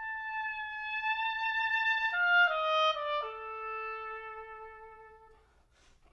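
Solo oboe playing a long held high note, then a quick run of falling notes down to a long note an octave lower that slowly fades away. A short breathy noise comes just before the next phrase begins.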